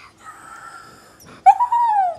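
A dog whimpering faintly, then one loud, drawn-out whine about one and a half seconds in that slides down in pitch.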